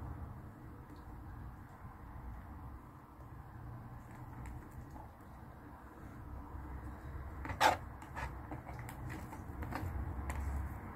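Faint low background rumble, with one sharp click about three-quarters of the way through and a few fainter ticks after it.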